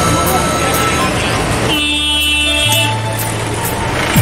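Street din with a vehicle horn sounding once for about a second, near the middle.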